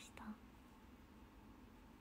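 Near silence: faint room tone, opened by a brief soft whisper in the first moment.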